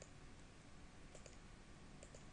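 Near silence with two faint mouse clicks a little past the middle.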